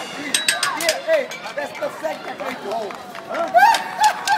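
Spectators chattering, many voices at once, with the drumming paused. A few sharp knocks sound within the first second or so.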